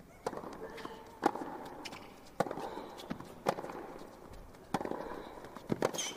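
Tennis rally: racquets striking the ball about six times, roughly one shot a second, with short grunts from the players on some of the shots.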